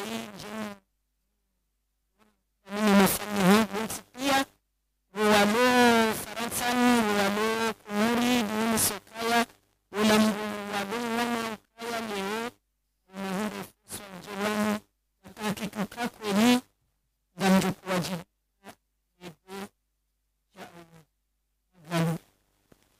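A woman singing unaccompanied, holding long notes with a wavering vibrato, in phrases of one to three seconds separated by short silences. The phrases become shorter and broken near the end.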